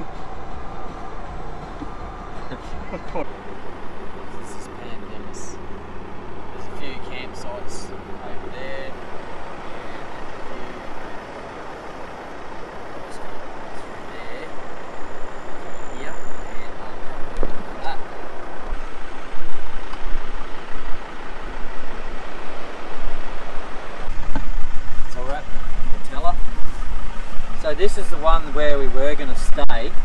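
Four-wheel-drive vehicle driving on beach sand and a sandy track: steady engine and tyre noise with a low drone in the first few seconds, growing louder and rougher in the second half. Voices come in near the end.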